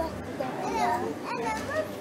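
Children's high-pitched voices chattering and calling in a busy game arcade, over a low hum that comes and goes.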